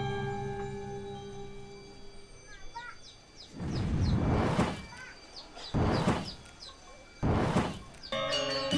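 The last steady tones of the music ring out and fade, then small birds chirp. Three loud bursts of rushing noise cut across them, about a second apart.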